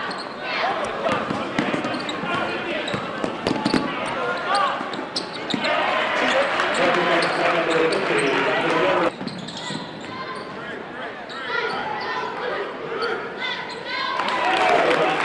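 Live basketball game sound in a gym: a ball bouncing on the hardwood court amid the voices and shouts of a crowd, echoing in the hall. The level drops suddenly about nine seconds in.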